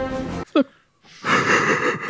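Film-score music with held notes stops abruptly about half a second in. After a brief pause, a man breaks into a breathy laugh near the end.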